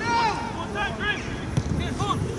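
Footballers shouting and calling to each other across the pitch, several short raised calls in quick succession, over a steady low wind rumble on the microphone.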